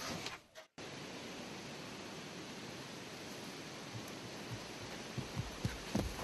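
Faint, steady background hiss, cut off for a moment by a brief dropout to dead silence just under a second in. A few soft, low knocks come near the end.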